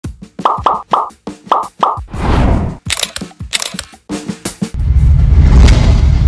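Edited sound effects: a quick run of five short pops in the first two seconds, then a rising whoosh and a few sharp hits. Background music with a heavy bass line comes in a little before the end.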